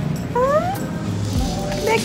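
A short, high voice sliding up in pitch once, under half a second long, with fainter short vocal sounds near the end.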